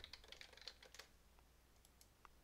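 Faint computer keyboard typing: a short quick run of keystrokes in the first second or so, with a couple of isolated key clicks later.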